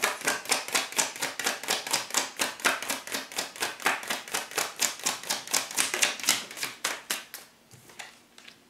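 Tarot deck being shuffled in the hand, the cards slapping together in a fast, even run of about five or six snaps a second that stops shortly before the end.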